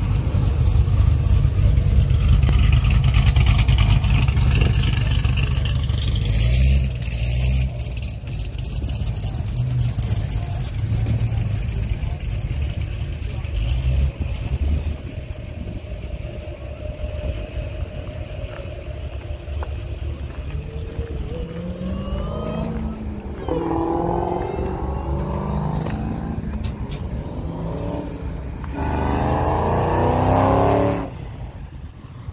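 Performance V8 cars pulling out and accelerating: a Corvette ZR1's supercharged V8 rumbles loudly as it rolls past, and later engines climb in pitch as cars accelerate away, loudest near the end.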